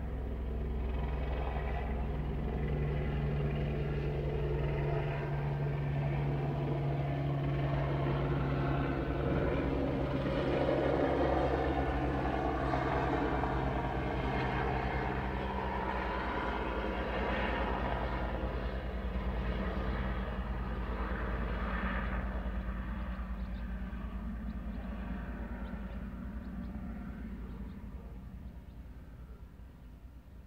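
Low engine rumble with a steady hum underneath. It swells around the middle and then slowly fades away near the end, like a vehicle passing by.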